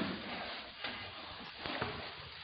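One sharp click, then faint scattered footsteps and rustling handling noise of a phone camera.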